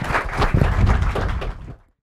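Audience applauding, a dense patter of clapping mixed with low thumps, fading and then cutting to silence just before the end.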